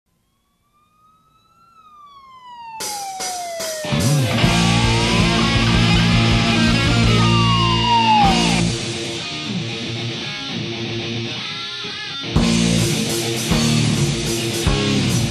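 Intro of a 1993 hard rock demo recording. A siren-like wail fades in, rising and then falling in pitch. About four seconds in, the band comes in with distorted electric guitars, bass and drums, under a second wail that rises and falls, and the band hits again hard near the end.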